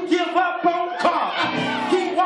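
Church praise music with held notes, and many voices singing and shouting over it: a congregation crying out in worship.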